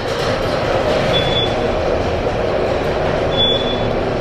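Elevator car running, a steady rumble and hum, with two short high beeps, one about a second in and one near the end.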